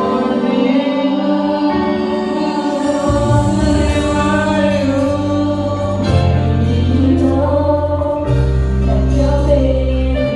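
A group of young voices singing a Christmas carol in chorus to acoustic guitar accompaniment. Held low bass notes come in about three seconds in and change every few seconds.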